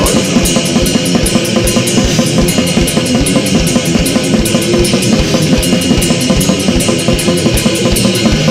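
Loud, heavy punk band recording: a drum kit keeps a fast, even beat of bass-drum and cymbal hits, about four to five a second, under a dense wall of distorted band sound.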